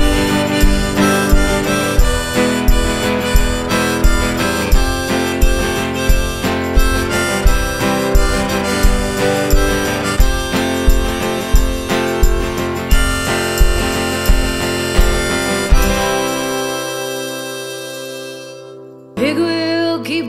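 Harmonica playing a solo over strummed acoustic guitar, with a steady low beat about twice a second. About sixteen seconds in, the band stops and the last chord rings out and fades. A woman starts singing near the end.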